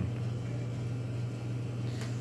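Room tone: a steady low hum with nothing else distinct.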